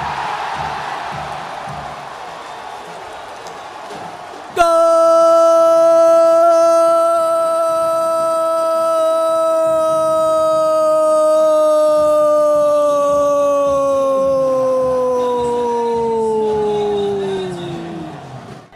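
Stadium crowd cheering a penalty goal, then about four and a half seconds in a Brazilian football commentator's long drawn-out shout of "gol": one loud held note lasting about thirteen seconds that sags in pitch near the end.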